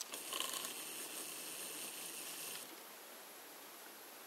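A short mechanical rasping, ratchet-like sound about two and a half seconds long, loudest and most ragged in its first second, then only faint background hiss.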